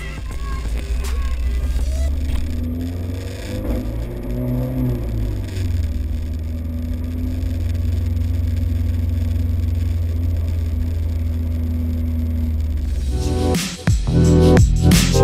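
A small car's engine heard from inside the cabin: it rises in pitch as the car accelerates, drops about five seconds in, then holds a steady note at cruising speed. It cuts off just before the end.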